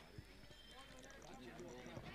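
Near silence: faint outdoor ambience with a soft tick or two.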